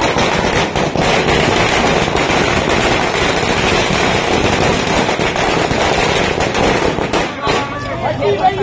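A string of firecrackers going off: a dense, rapid crackle of bangs that stops about seven seconds in.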